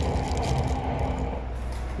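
Steady running noise of a moving train heard from inside the carriage: a low rumble with a faint steady hum.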